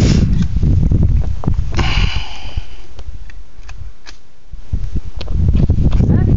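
Wind buffeting the camera microphone, a dense rumble that eases for a moment near the middle and then picks up again. A sharp click or knock comes at the very start, and a brief higher-pitched tone follows about two seconds in.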